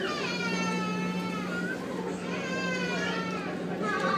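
A young child giving two long, high-pitched wailing cries, each lasting over a second, over the steady low hum of the ferry's engines.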